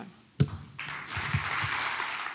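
A single sharp knock about half a second in, then audience applause that starts about a second in and keeps going.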